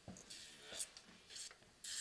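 Several short, faint scratchy strokes of an electric nail file's fine sanding band skimming over a natural nail plate at low speed, buffing off the surface shine. The loudest stroke comes near the end.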